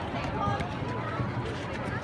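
Spectators talking, many overlapping voices close to the microphone with the crowd's chatter behind them.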